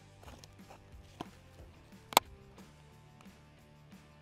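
Background music with steady low tones, broken by a sharp click about two seconds in and a fainter click about a second in.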